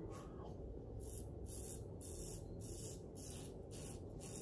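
Safety razor with a Feather blade scraping through stubble in short strokes, about two a second, on a second pass over thin lather. The whiskers are plainly audible as the blade cuts, which the shaver takes as a sign the blade is getting dull and needs replacing.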